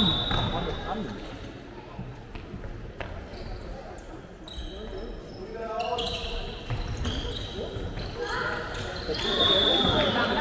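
Handball game sound in a sports hall: the ball bouncing and thudding on the court floor, short high shoe squeaks near the start and again near the end, and shouts from players and spectators in the second half.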